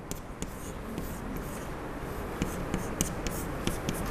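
Chalk writing on a blackboard: a run of scratchy strokes and short sharp taps as a line of symbols is written.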